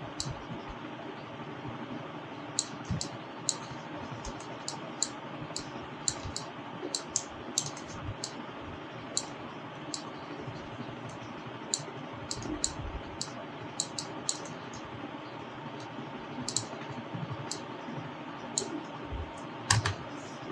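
Irregular clicks from a computer mouse and keyboard, several dozen in all, over a steady background hiss.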